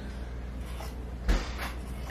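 Fabric scissors cutting through a football jersey laid on an ironing board, with one sharp knock a little past halfway.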